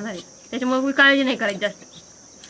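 Steady high-pitched drone of insects, most likely crickets, running under the conversation.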